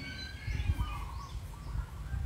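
Faint bird calls, a few thin chirps, over a steady low rumble of background noise.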